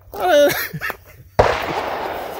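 A woman's brief laugh, then about one and a half seconds in a sudden shotgun report with a fading tail.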